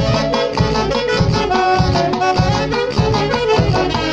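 Live orquesta folklórica playing: saxophones in harmony over timbales, cymbal and a bass drum keeping a steady beat.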